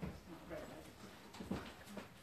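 A few sharp knocks or clicks, one at the start and one about one and a half seconds in, over faint murmured voices in a room.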